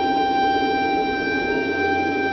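A ney, the end-blown reed flute, holding one long, steady note.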